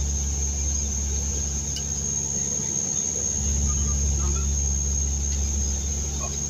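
Dash 8 Q200 twin turboprop engines running, heard inside the cockpit: a steady low propeller drone with a constant thin high whine above it.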